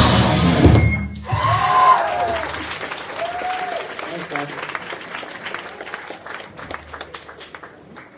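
A hardcore punk band's song stops abruptly about a second in. The small crowd then whoops and claps, the applause thinning and fading away.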